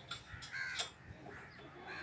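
A bird calling outdoors: a few short calls, one about half a second in and more over the second half, with a single sharp click near the middle.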